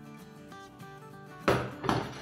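Two knocks about half a second apart near the end, as an upturned metal tube cake pan with a plate under it is set down on a stainless-steel counter, over quiet background music.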